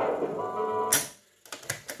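Music playing back from a Cambridge 9106 reel-to-reel tape recorder cuts off with a clunk from its piano-key controls about a second in, followed by a quick run of mechanical clicks as the transport keys are worked.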